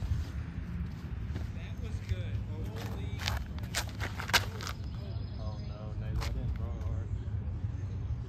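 Outdoor ambience with a steady low rumble, as of wind on the microphone. A few sharp clicks and taps come about three to four and a half seconds in, while a disc golf backhand drive is thrown; the loudest is a single snap near the end of that run. Faint voices can be heard in the background.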